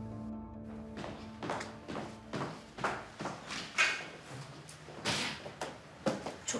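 Background music that breaks off about half a second in, followed by a series of irregular knocks and thuds and the sound of a front door being opened near the end.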